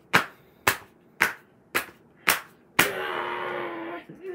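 Paperback picture books being smacked against each other in a mock fight: six sharp slaps, about two a second. Near the end a drawn-out vocal sound follows.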